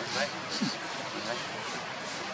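Indistinct human voices talking in the background, with a few short rising-and-falling vocal sounds over steady outdoor noise.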